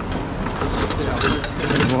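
Scrap metal and wire being handled in a bin, rattling and clinking, with a few short knocks in the second half over a steady low rumble.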